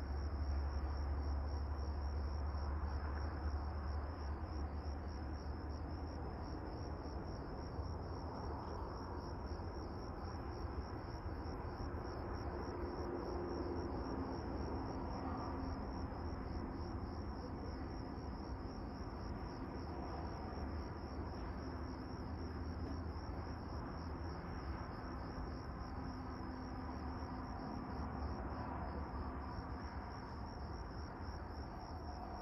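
Crickets chirping in a continuous, finely pulsing high trill, over a low rumble that is strongest in the first few seconds.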